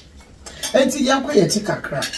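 A woman's voice talking after a half-second pause.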